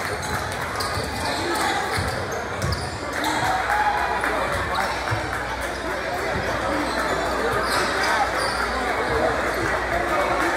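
Basketball bouncing on a hardwood gym floor during live play, with scattered thuds, under constant crowd chatter and shouting voices in a large gymnasium.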